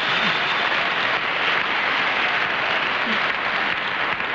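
Studio audience applauding, a steady sustained round of clapping.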